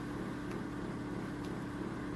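A steady low hum with faint hiss and no distinct events: room tone.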